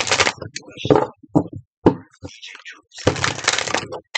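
A deck of cards shuffled by hand, a run of short papery crackles and slaps with a longer stretch of shuffling near the end.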